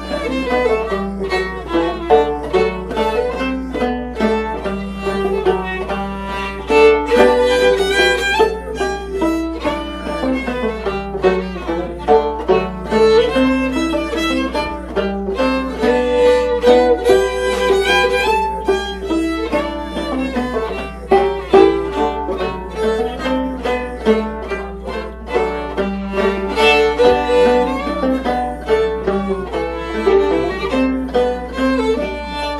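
Old-time fiddle and Enoch banjo duet playing a waltz, the fiddle bowing the melody over the banjo's picked accompaniment.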